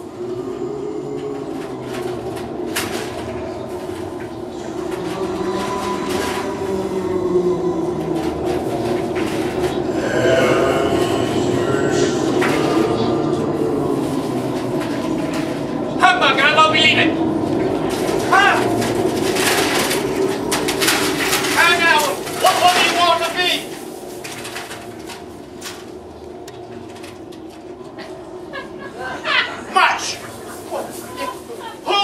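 Eerie stage sound effects for a ghost's entrance: a sustained low drone under wavering, moaning voices that rise and fall in pitch, loudest from about 16 to 23 seconds in, with scattered sharp knocks.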